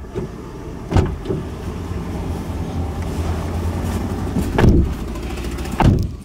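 Car doors opening and shutting as two people get into a car's front seats: a thud about a second in, then two heavier thuds near the end. A steady low hum runs underneath.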